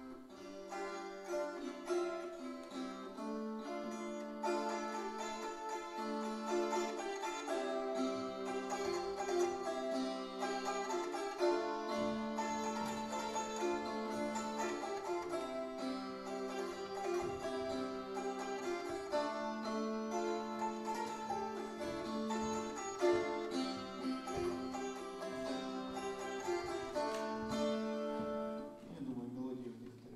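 Wing-shaped gusli, a plucked Slavic and Baltic psaltery, playing a continuous tune of ringing, overlapping notes over a repeating low pattern; the playing dies away shortly before the end.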